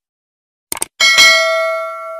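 Subscribe-button animation sound effect: a quick double mouse click, then a bell ding about a second in that rings on and fades away.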